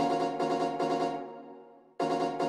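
Synthesized keyboard chord pattern playing back from a music project: a quick run of repeated chord notes in the first second, then ringing out and fading until the pattern starts again at the very end.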